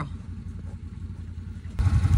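Side-by-side utility vehicle's engine idling, a steady low rumble that grows louder just before the end.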